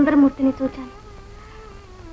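A woman laughing in a quick, even run for about the first second, then a soft held note of background film music.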